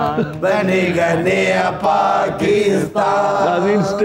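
Men's voices singing together in a drawn-out, chant-like melody, with long wavering notes.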